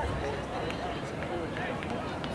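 Indistinct voices of spectators and players talking and calling out across an outdoor soccer field, several overlapping at once.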